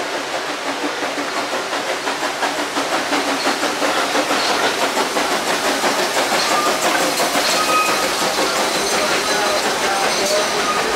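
ČKD 0-4-0T steam locomotive working past with a steady exhaust beat and steam hiss, getting louder from about three seconds in as it comes alongside, followed by its rattling coaches.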